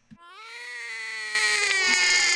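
Newborn baby crying: one long wail that starts just after the beginning, its pitch easing slightly downward, and grows louder about one and a half seconds in.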